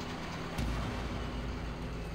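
A low, steady rumble with a faint hum, no distinct events.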